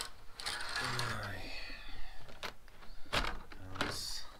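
A curtain pulled aside with a rustle in the first second or so, then a few sharp clicks and knocks from the window or door frame being handled.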